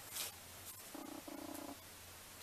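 Faint closed-mouth humming from a woman: two short held notes, one right after the other, about a second in, over a faint steady low hum of the room.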